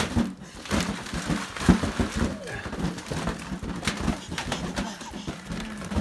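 Balloons and paper streamers being batted about, with soft taps and rustles, and a baby babbling in pitched, drawn-out sounds through the second half.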